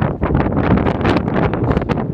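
Wind buffeting the microphone: a loud, gusty rumble strongest in the low end.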